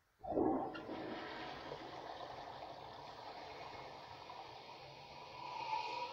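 1951 Kohler Penryn toilet flushing: a sudden rush of water as the flush starts, then a steady rush as the water swirls in the bowl, swelling again near the end.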